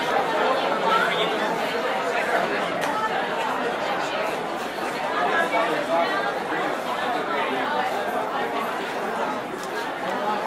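Steady babble of many people talking at once, with no single voice clear.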